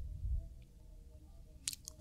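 Quiet pause: faint room tone with a couple of small, faint clicks near the end.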